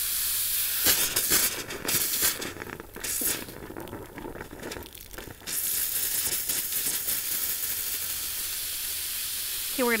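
Garden hose spray nozzle running, with water hissing as it jets into a puddled soil well at the base of a young tree. The hiss turns uneven and quieter for a few seconds in the middle, then settles back to steady.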